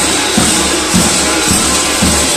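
Kukeri dancers' large waist bells jangling and clanging together as the group dances, over a steady drumbeat of about two beats a second.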